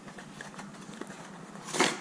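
Plastic headlight-bulb packaging handled and opened by gloved hands: a few faint clicks, then a short crinkling rustle near the end.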